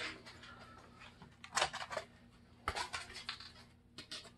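A few light knocks and clatters as parts of the fog chiller are handled and taken apart, over a faint steady hum.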